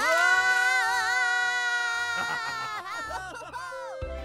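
A cartoon character's long drawn-out 'Aaa' yell, held for about three seconds with a wavering pitch and falling away at the end, followed by a shorter falling cry just before music begins.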